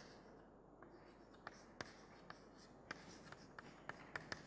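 Chalk writing on a chalkboard: faint, irregular taps and short scratches as letters are stroked out.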